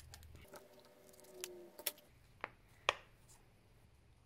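Scissors snipping a thin plastic placemat cut-out: about four short, sharp snips roughly half a second apart, between one and three seconds in.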